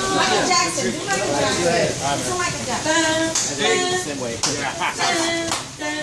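Several people's voices overlapping, with a few scattered hand claps.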